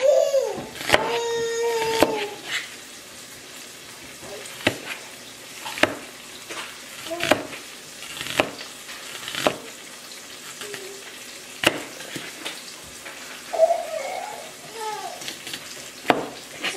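Large kitchen knife chopping an onion on a plastic cutting board: sharp, irregular chops about once a second over a faint steady hiss.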